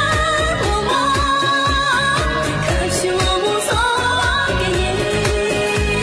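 A modern Tibetan song: a sung melody over a steady drum beat.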